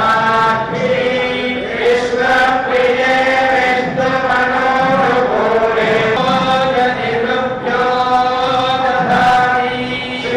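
Vedic mantra chanting during an abhishekam: a continuous intoned recitation held on a few steady pitches, moving between them every second or two without a break.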